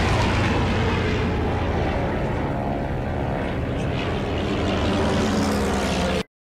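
Propeller aircraft engines droning steadily, with most of the sound low in pitch.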